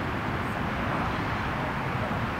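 Steady low rumble of outdoor background noise, with no single sound standing out.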